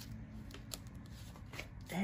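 Paper sticker sheets being handled, with light rustling and a few soft taps.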